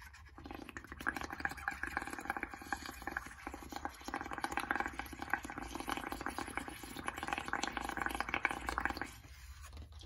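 Blowing through a straw into a bowl of dish soap, water and paint: continuous bubbling and crackling as the foam builds up, stopping about a second before the end.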